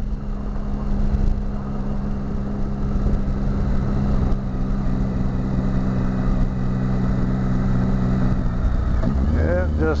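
Triumph motorcycle engine running at a steady cruise, with wind and road noise. About eight and a half seconds in the engine note drops as the bike slows.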